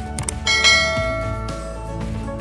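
A click, then a bright bell chime about half a second in that rings on and fades slowly, over steady background music: the sound effect of a subscribe-button animation.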